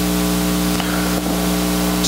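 A steady hum of several held low tones over an even hiss, unchanging through a pause in speech.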